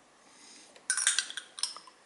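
Metal spoon clinking and scraping against a ceramic plate: a short cluster of sharp clinks about a second in, over in under a second.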